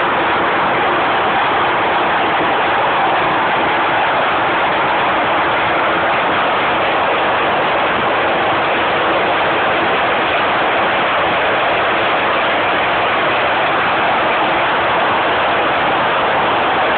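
24-carrier horizontal hose braiding machine running: a loud, steady mechanical noise that holds an even pace throughout.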